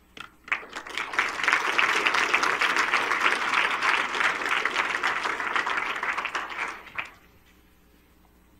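Audience applauding: a round of clapping that builds up within the first second and dies away about seven seconds in.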